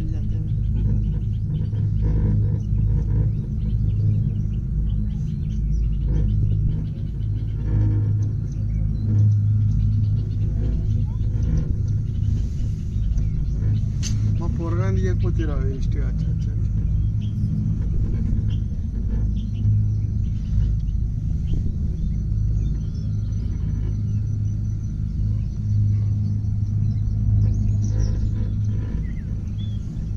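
Steady low rumble inside a moving open-sided cable car cabin as it travels along its cable. There is a sharp click about fourteen seconds in.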